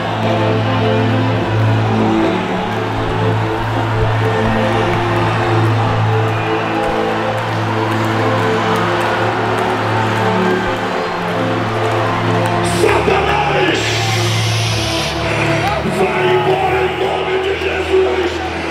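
Church worship music: a keyboard holding sustained chords over a steady bass, with a congregation's voices and cheering. About two-thirds of the way through, a louder burst of voices rises over the music.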